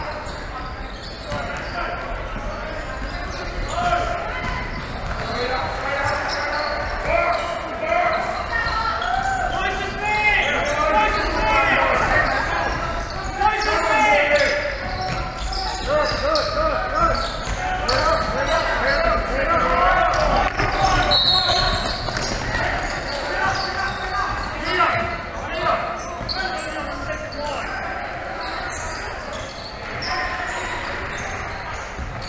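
Basketball bouncing on a hardwood gym floor, with indistinct voices of players and spectators echoing in the large hall.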